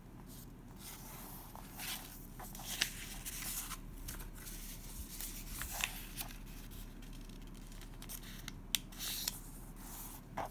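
A sheet of A6 paper being folded and creased by hand: irregular rustling and crinkling, with a few sharp crackles, about three seconds apart, as folds are pressed flat.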